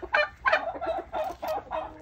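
Domestic turkey calling: a quick run of short, repeated notes, about five a second.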